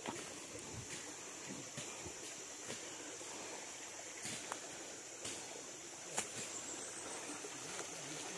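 Faint rustling and a few light snaps of footsteps through leaf litter and undergrowth, over a steady high-pitched background hiss.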